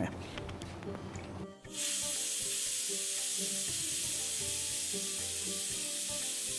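Bajaj pressure cooker's weight valve letting off steam in a steady, loud hiss that starts suddenly about two seconds in: the cooker's whistle, the sign that it has come up to pressure.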